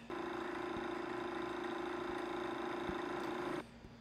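A steady machine-like hum with one constant pitched tone, from a film clip's soundtrack played on the computer; it starts and stops abruptly, cutting off a little before the end.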